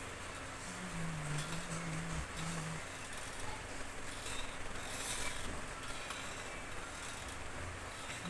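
Steady background noise with a low droning tone from about one to three seconds in, and brief rustling of packets being handled on a shop shelf.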